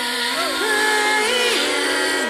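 Music: a song with a woman's voice singing held notes that slide from one pitch to the next, over the backing track.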